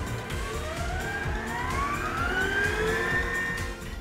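Electric stand mixer's motor whining and rising steadily in pitch over about three seconds as it is run up in speed to whip egg whites, with background music.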